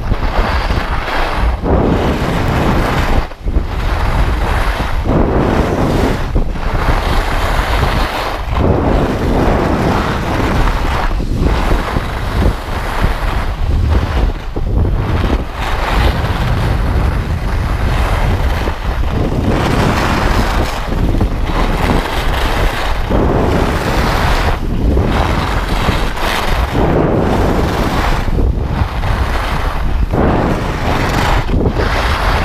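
Wind rushing over an action camera's microphone during a downhill ski run, with skis running over groomed snow. The noise is loud and steady, easing briefly about every couple of seconds.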